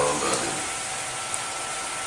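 Steady, fairly loud hiss of background noise in a pause of a man's speech, with a faint steady tone running through it.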